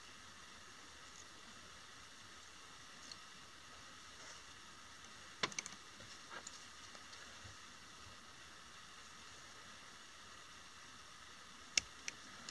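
Faint room hiss with a few soft clicks and rustles from hands, thread and tools at a fly-tying vise while deer hair is tied onto the hook, and one sharper click near the end.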